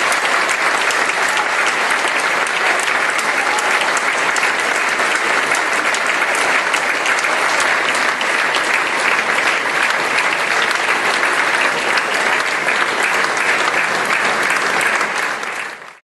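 Audience applauding: dense, steady clapping from a large seated crowd, fading out near the end.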